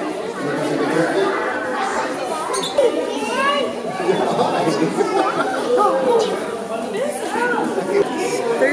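Many children talking and calling out at once, an unbroken babble of young voices in a large indoor space.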